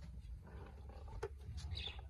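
Low, steady rumble of wind buffeting the microphone, with a single sharp knock about a second in.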